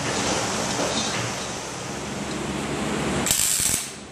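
Steady mechanical rattling and clicking from the driveshaft turning in its press-welder fixture, then about three seconds in a short, loud burst of MIG welding arc as a tack weld goes onto the yoke, cutting off sharply.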